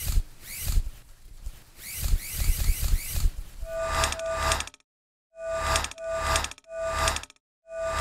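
Electronic logo jingle: whooshing rising sweeps over low beats, then a run of short, bright chiming synth notes separated by brief silences, ending abruptly.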